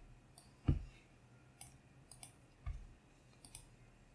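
Computer mouse clicking: several short, faint clicks at irregular intervals, two of them louder with a dull low knock, about a second in and near three seconds in.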